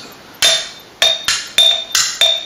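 Glass jam jars struck with sticks, five sharp ringing taps: one hand keeps a steady beat while the other drifts ahead of it, practising a polyrhythm by drifting through the beat.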